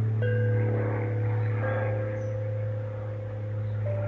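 Steel tongue drum played slowly, single notes struck and left to ring into one another: one just after the start, another about a second and a half in, and a third, slightly higher, just before the end.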